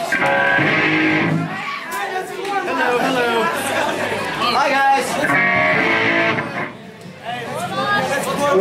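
Electric guitar chords ringing out twice, each held for about a second, with crowd chatter and shouting in between.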